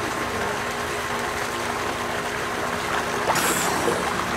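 Swimming pool water moving steadily around a camera held at the water's surface, with a short splash near the end as a swimmer breaks the surface.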